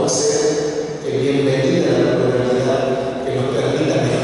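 A man giving a speech in Spanish into a podium microphone, his voice carrying on without a break apart from a short pause about a second in.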